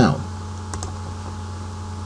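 Two quick clicks at a computer, close together, a little under a second in, over a steady low hum.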